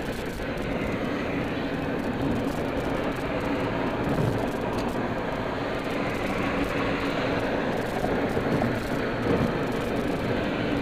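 Steady road noise inside a car cruising at freeway speed: an even rumble of tyres and engine with a faint steady hum.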